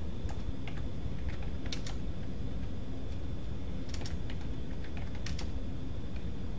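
Computer keyboard being typed on: irregular key clicks with a few quick runs of keystrokes, as a password is entered, over a steady low hum.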